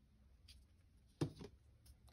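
Quiet room tone, with one short, light click a little over a second in and a few fainter ticks, from a clear plastic ornament ball being handled on a table.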